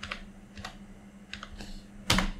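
Computer keyboard keys being typed: about five or six separate keystrokes at uneven intervals, two of them close together past the middle.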